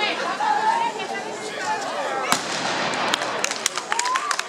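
Crowd voices, then a single sharp bang a little past halfway, followed from about three seconds in by a fast, irregular run of firecracker bangs set off to mark the meeting of the two statues.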